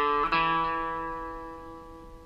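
Electric guitar (Epiphone hollow-body) playing two single plucked notes. A short note comes first, then the open D string rings out and slowly dies away.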